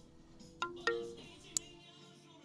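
Faint electronic notification chimes: two short ringing notes in quick succession about half a second in, then a sharp click, the sound of message alerts pinging on a phone flooded by chat spam.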